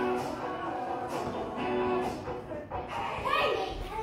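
Music with guitar playing held notes, with children's voices over it about three seconds in.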